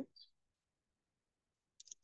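Near silence, with a few faint computer clicks near the end.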